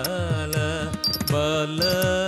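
Carnatic dance music in raga Mohana, Adi tala: a sung melody that holds and bends its notes over a steady beat of low drum strokes, with sharp small-cymbal clicks marking the rhythm.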